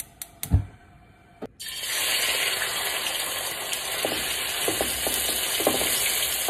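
A few sharp clicks and a knock, then, about a second and a half in, marinated sliced sirloin steak going into hot oil in a stainless steel wok starts sizzling loudly and steadily. Light clacks of tongs turning the meat come through the sizzle near the end.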